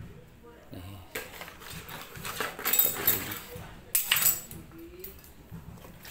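Steel knife blades clinking and rattling against each other as a pile of knives is handled, in uneven bursts from about a second in and a sharp clink at about four seconds.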